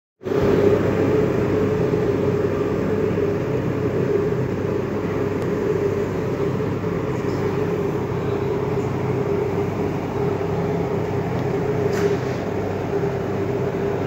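A steady machine hum with a constant droning tone, unchanging throughout.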